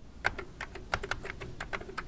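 Typing on a computer keyboard: a quick, uneven run of key clicks, about five or six a second.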